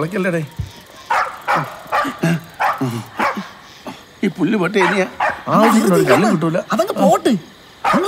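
Men's voices mixed with a dog barking: short separate calls in the first half, then a denser run of sound from about halfway.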